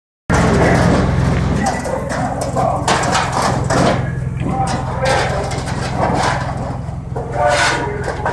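Indistinct voices talking over a steady low hum, with a few short knocks.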